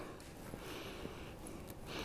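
A man sniffing an open tin of beard balm held to his nose: a faint, breathy inhale through the nose in the first second.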